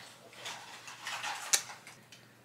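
Faint handling noise as a plastic creamer bottle is turned in the hand, with one sharp click about three-quarters of the way through.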